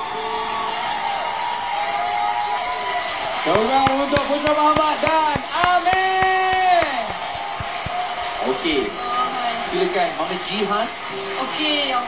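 The closing phrase of a pop ballad sung by a man and a boy over band music, ending on a long held note, followed by voices talking on stage.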